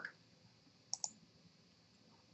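Two quick clicks, close together, as the presentation slide is advanced, in otherwise near silence.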